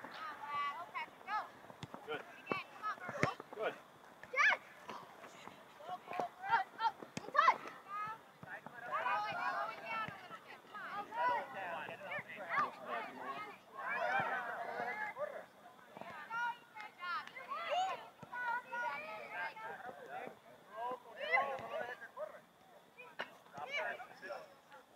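Indistinct shouting and calling from players, coaches and spectators across an outdoor soccer field, heaviest in the middle of the stretch, with a few short sharp knocks in the first several seconds.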